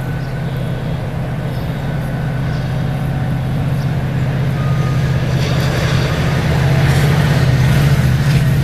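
GO Transit MP40PH-3C diesel locomotive approaching at the head of a bilevel commuter train. Its engine is a steady low drone that grows gradually louder, with wheel and rail noise building over the last few seconds.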